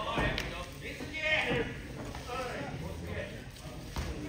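Pro wrestling in the ring: voices shouting over thuds of feet on the ring mat, with a sharp hit right at the end as the two wrestlers collide.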